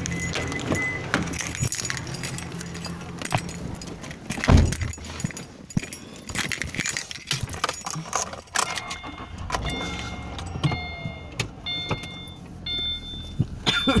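Clicking and rattling, like keys jangling and a phone being handled inside a car, with a heavy thump about four and a half seconds in. Late on, a run of short, repeating high beeps.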